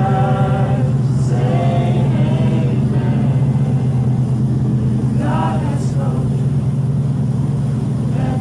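Singing voices in short phrases over a steady, loud low drone, as closing music.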